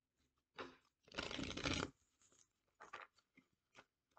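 A deck of tarot cards riffle-shuffled on a wooden table: a brief riffle, then a longer, louder riffle of just under a second as the two halves fall together, followed by a few soft taps and rustles as the deck is squared up.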